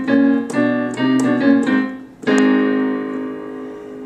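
Digital piano playing a quick run of chords, then a final chord struck about two and a quarter seconds in that is held and slowly fades: the closing cadence of a jazz standard.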